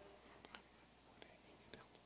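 Near silence: room tone with a few faint, brief clicks from glass cruets and altar vessels being handled.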